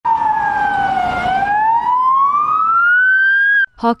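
Ambulance siren wailing. The tone dips for about a second, then rises slowly and steadily, and it cuts off suddenly just before the end.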